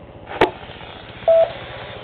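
Ham radio transceivers between transmissions: a sharp click about half a second in, a low steady hiss, then a single short beep a little over a second in.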